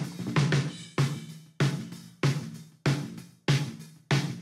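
Recorded snare drum played back from its soloed top microphone, the channel processed on a digital mixing console: a steady beat of sharp hits, about three every two seconds, each ringing briefly.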